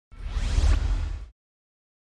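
Logo intro sound effect: a single whoosh with a deep low rumble underneath and a faint rising sweep, lasting just over a second.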